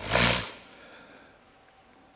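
A man's loud, short breath into a lectern microphone, lasting about half a second, then near silence with faint room tone.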